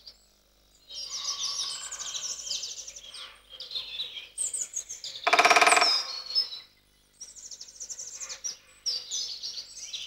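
Woodland songbirds singing in bursts of rapid, high trills and chirps. About halfway through, a single loud, nasal call lasting about a second stands out over them.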